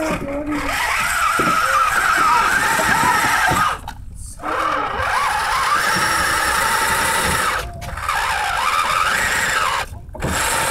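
Electric motor and gearbox of a scale RC crawler whining under throttle while climbing a steep dirt pile, in three runs of a few seconds with brief pauses about four and eight seconds in. The pitch rises and falls as the throttle changes.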